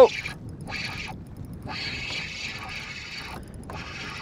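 Spinning reel at work while a hooked bass is fought: the reel's gears and drag make a mechanical whirring in several stretches with short gaps between them.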